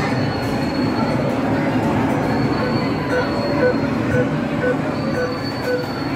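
Arcade racing game cabinet's car engine and tyre-squeal effects over loud arcade din. A high squeal comes and goes several times, and a regular electronic beeping sounds about twice a second.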